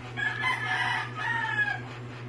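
Rooster crowing once, the crow in two parts with the second ending on a falling note.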